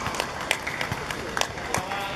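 Faint scattered voices of players and onlookers on an outdoor football pitch, with a few sharp, isolated clicks.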